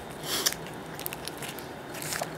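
A person chewing a mouthful of soft egg salad sandwich, with one louder chew about half a second in.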